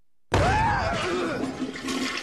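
Cartoon sound effect of water rushing out of a burst fire hydrant. It cuts in suddenly about a third of a second in, with a deep rumble under it and a brief rising-and-falling tone over it near the start.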